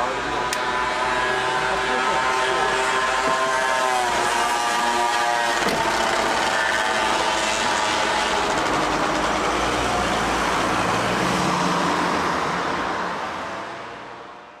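Car and street traffic sound: a steady pitched hum for the first five or six seconds, then a broad rushing noise, fading out near the end.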